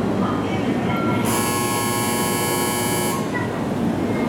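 Platform departure bell ringing steadily for about two seconds, then cutting off, while the train stands with its doors open: the signal that the doors are about to close. Station platform noise and announcement voices underneath.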